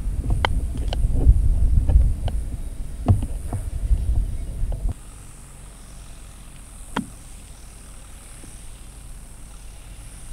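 Low wind rumble on the microphone for about the first five seconds, stopping abruptly. Then, about seven seconds in, a single sharp click: a 7-iron clipping a golf ball out of a sand bunker with a putt-like stroke.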